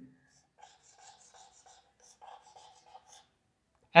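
Marker pen drawing on a whiteboard: a run of faint, short quick strokes as zigzag resistor symbols are sketched.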